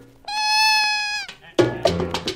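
1950s mambo band recording breaking off for a moment, filled by one held high note about a second long that dips slightly at its end, before the band comes back in near the end.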